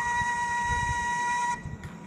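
A flute holding one long steady note at the end of a descending melodic phrase, cutting off about a second and a half in.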